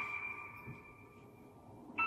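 A chime struck once, a high ringing tone with a lower one beneath, fading slowly; a second chime strikes right at the end.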